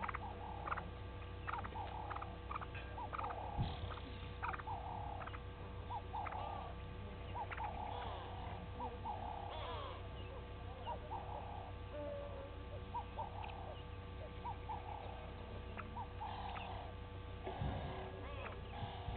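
Birds giving short calls over and over, about one or two a second, with a few quick rising notes, over a steady electrical hum.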